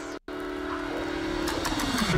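Sound design of an animated logo sting: sustained synth tones that swell louder, with a tone sliding down in pitch and a few sharp crackling clicks near the end, building toward the logo reveal.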